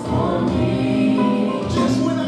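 Gospel music with a choir singing sustained, shifting chords.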